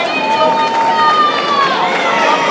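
Several people shouting over one another, raised voices overlapping with some long, drawn-out calls.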